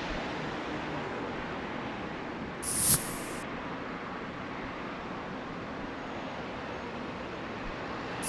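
Steady road traffic noise from cars and trucks passing through a busy intersection, with a short, loud hiss about three seconds in.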